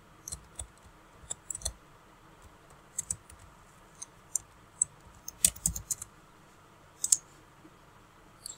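Computer keyboard typing: scattered, irregular keystrokes, with a quicker cluster of louder keys a little past halfway and a couple more near the end.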